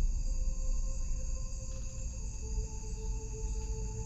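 Night insects, crickets, trilling steadily in high-pitched unbroken tones, over a low rumble and faint steady droning tones.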